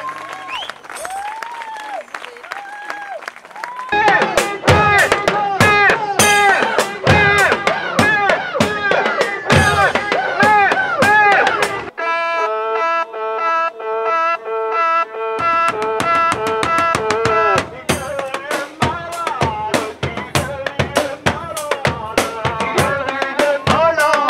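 Live drum-driven band music in edited excerpts: a quieter opening, then loud drumming with voices over it, a held chord of steady tones about twelve seconds in, and drumming again after about fifteen seconds.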